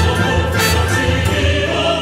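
Choir singing with an orchestra in a musical-theatre score, loud and sustained over a steady low bass.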